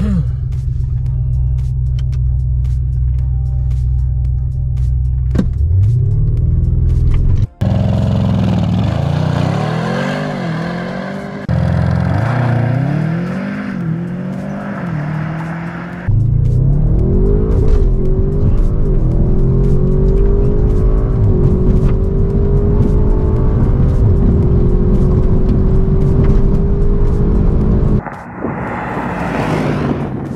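Audi RS6's 4.0-litre twin-turbo V8, running an APR Stage 1 tune with a Milltek cat-back exhaust, holding steady on the line and then launching flat out from about five seconds in. The engine note climbs through each gear and drops at every upshift, then rises in one long pull in a higher gear near the end.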